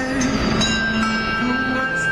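A group of handbells rung by several players in a melody: ringing bell notes that start one after another and hang on, overlapping, with a low note sounding from about half a second in.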